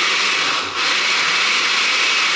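Blender running, blending a smoothie, with a brief dip about two-thirds of a second in.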